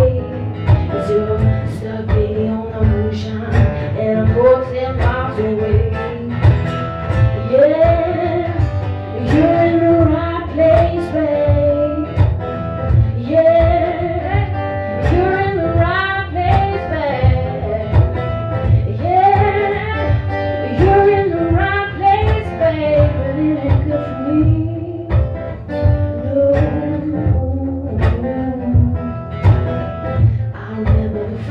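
A woman singing an acoustic soul song while playing acoustic guitar, the guitar strummed steadily and the voice coming in phrases with short breaks.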